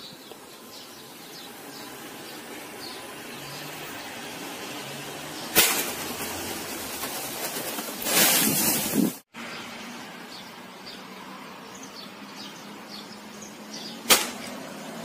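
Outdoor background with faint, scattered bird chirps. There is a sharp click about five and a half seconds in, and a loud rush of noise around eight seconds in that stops abruptly.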